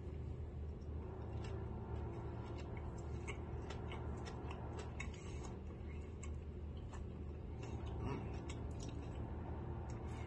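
A person chewing a mouthful of M&M-topped chocolate-glazed donut: scattered small mouth clicks, over a steady low hum.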